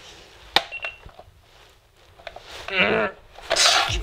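A sharp click and a short electronic beep from a digital alarm clock, then a brief groggy groan. Near the end a loud swipe and clatter as an arm sweeps the alarm clock off a table.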